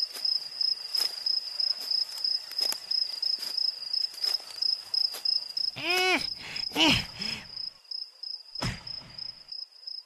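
Steady cricket chirping with regular footsteps, roughly one a second. About six and seven seconds in, a boy gives two short strained grunts of effort, as if straining under a heavy load.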